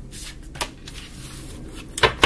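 A tarot deck being shuffled by hand: a run of quick, soft card clicks, with a sharper snap about halfway through.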